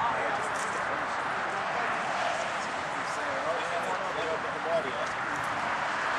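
Indistinct background chatter of people talking over outdoor noise, with no clear words.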